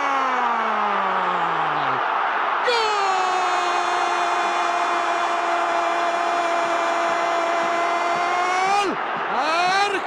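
A commentator's voice drawn out in long calls over stadium crowd noise. The first call slides down in pitch and ends about two seconds in. Then comes one long note held steady for about six seconds, and wavering shouts follow near the end as the free kick goes in.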